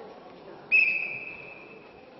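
Wrestling referee's whistle: one sharp, steady blast of about a second that starts loud and fades. It signals the restart of the bout, with the wrestlers engaging right after.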